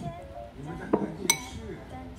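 Metal spoon clinking twice against a ceramic bowl as a toddler scrapes and tilts it while eating, the second clink ringing.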